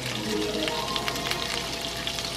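Kerrygold garlic-and-herb butter sizzling and crackling as it melts in a hot frying pan while being stirred, with steady held tones underneath.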